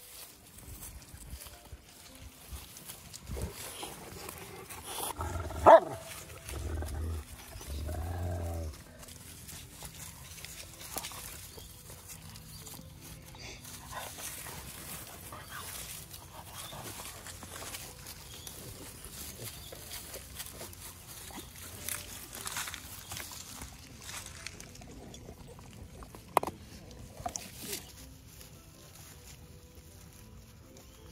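Dogs vocalising: a single loud bark about five and a half seconds in, followed by a couple of seconds of low growling, then quieter rustling with occasional sharp clicks.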